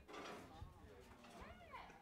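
Near silence, with faint distant voices. One short call near the end rises and falls in pitch.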